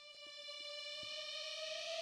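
A single synthesizer note played from a ROLI Seaboard Block, swelling in and gliding slowly upward in pitch as the finger slides along the key. The bend falls short of the slide, a sign that the synth's pitch-bend range doesn't match the Seaboard's.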